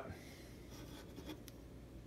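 Faint rubbing and a few light clicks of a hand turning a drilled, rough-cut wooden pipe block, over a low steady room hum.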